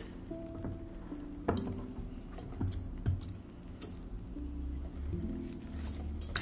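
Wire whisk stirring thick cake batter in a glass container, with a few scattered ticks of the whisk against the glass, over faint background music.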